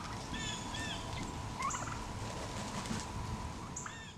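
Domestic turkeys calling, with short calls about half a second in, again around a second and a half in, and near the end.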